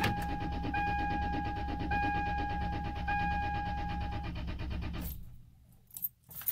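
Starter cranking a 2001 Toyota Tacoma engine for about five seconds without it catching. The EFI fuse is pulled so the fuel pump is unpowered, and cranking bleeds off the fuel-line pressure. A dashboard warning chime beeps about once a second over the cranking and stops about four seconds in.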